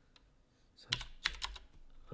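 Keystrokes on a computer keyboard: six or seven quick clicks starting about a second in, as a dimension value is typed in.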